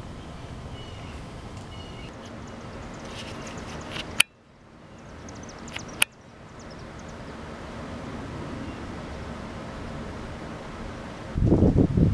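Steady outdoor background hiss with a few faint, short high chirps. Two sharp clicks come about four and six seconds in, and the background drops away between them. A man's voice starts just before the end.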